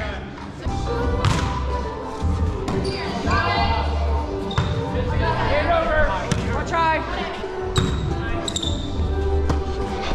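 Volleyball rally in a gym: several sharp ball hits echoing in the hall, with players' voices calling out between them.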